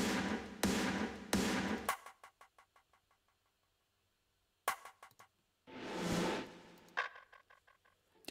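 Processed drum samples auditioned one by one: a distorted, compressed snare sample hit three times in quick succession, trailing into fading delay echoes. After a pause of a couple of seconds come short rim and percussion samples with delay repeats: a sharp click, a swelling hit lasting about a second, and another click.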